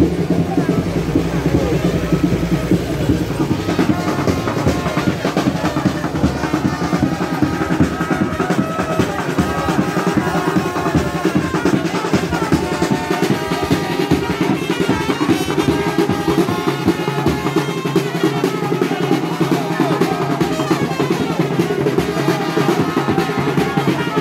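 Marching band playing: snare and bass drums beating a continuous rolling rhythm, with a pitched melody over it. It starts abruptly and runs on without a break.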